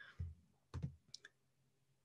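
A few faint clicks and soft knocks, scattered over the first second or so, then near silence.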